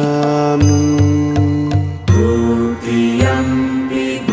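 Buddhist devotional music: a chanted mantra in long, steady held notes over a regular low beat.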